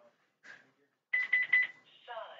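An electronic beeper sounding four quick, high-pitched beeps in a row, starting about a second in.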